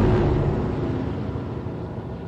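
A car driving past: a rush of engine and tyre noise that is loudest at the start and slowly fades away.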